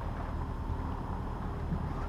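Steady low rumble of wind buffeting the camera microphone.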